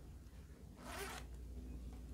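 A single short rasp of noise, about half a second long, about a second in, over a faint low steady hum.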